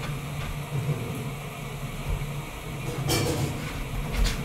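Thread being worked through leather during hand stitching, with a short rasp about three seconds in, over a steady low hum.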